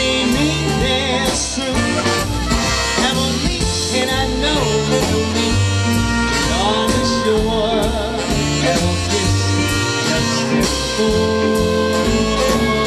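Live swing band playing an instrumental passage, with saxophones, guitar and drums over a steady beat.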